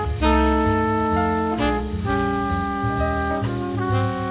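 Jazz recording: saxophone and brass horns hold chords that shift every second or so, over a drum kit.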